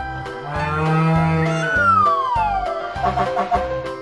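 Children's background music with a steady beat. About half a second in, a low bull's moo sound effect lasts about a second, followed by a falling whistle-like tone.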